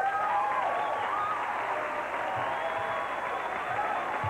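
Comedy club audience applauding steadily, with a few voices calling out over the clapping.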